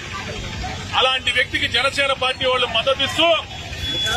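A man speaking Telugu into reporters' microphones, with a steady haze of outdoor background noise.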